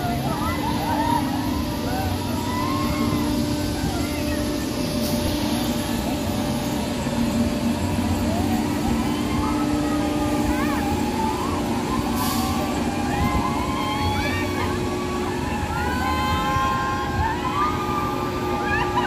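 Riders screaming on a spinning pendulum thrill ride: many overlapping rising and falling shrieks, growing more frequent in the second half, over a steady low hum.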